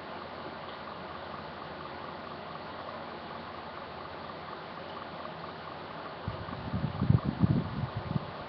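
Electric fan running with a steady whooshing hiss. About six seconds in, a cluster of low bumps and rumbles comes over it.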